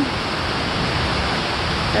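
Heavy rain falling steadily on trees and foliage, an even hiss.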